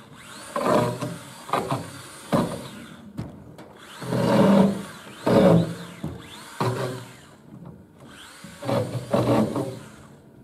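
A hand tool working a wooden pole: a run of about eight uneven rasping strokes, in bunches with short pauses between them.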